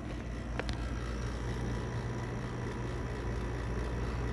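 Truck engine running steadily outside, a low even hum.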